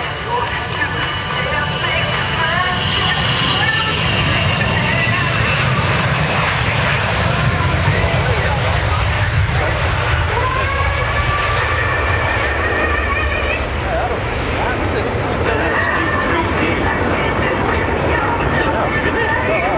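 Raytheon Sentinel R1's two Rolls-Royce BR710 turbofans at takeoff power, a loud, steady jet roar as the aircraft runs down the runway, lifts off about ten seconds in and climbs away.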